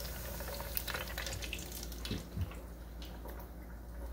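Hot oil in an electric deep fryer bubbling and crackling around grit cakes just dropped in, a steady sizzle with fine pops. The crackling thins out near the end.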